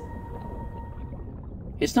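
Low, steady background rumble with a faint held tone that fades out about a second in. A man's voice starts speaking near the end.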